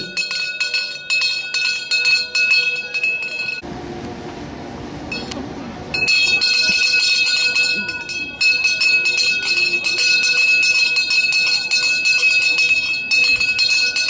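A handheld cowbell rung rapidly and without pause, its clanking strikes coming several times a second. The ringing breaks off for about two seconds a little over three seconds in, leaving only a low hiss, then starts again and runs on.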